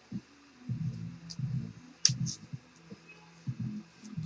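Trading cards being handled on a table: a few faint clicks over low, muffled bumps and a low hum.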